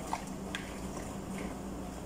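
Quiet, steady low hum, with a couple of faint small splashes from a hand moving in a bowl of soaking water.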